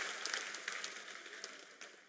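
Applause dying away, thinning to a few scattered claps.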